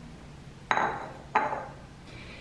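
Two sharp clinks of ceramic dishes knocking together or being set down, each ringing briefly, about two-thirds of a second apart.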